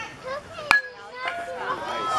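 A baseball bat hitting a pitched ball: one sharp crack about two-thirds of a second in, with spectators' voices rising toward the end.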